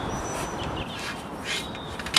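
A few short, high bird calls over a steady outdoor background rush.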